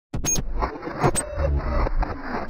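Sound effects of an animated football intro: a dense rushing sound with deep bass and a few sharp clicks. It starts abruptly just after the cut.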